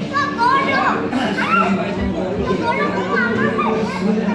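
Several voices chattering and calling out over one another, with high children's voices among them, over a steady low hum.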